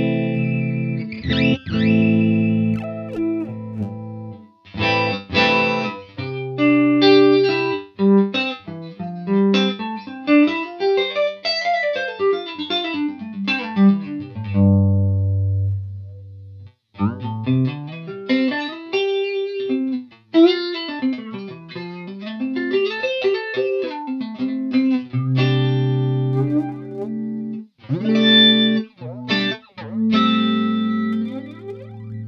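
Electric guitar played through the Line 6 HX Stomp's Dynamix Flanger, a model of the MicMix Dyna-Flanger, in envelope mode. Strummed chords at the start and near the end; in between, single notes with the flange sweep gliding up and down, with a brief break in the middle.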